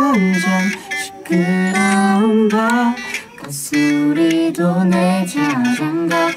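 A voice singing a melody in phrases of a second or so, with acoustic guitar accompaniment: a vocal practice run-through.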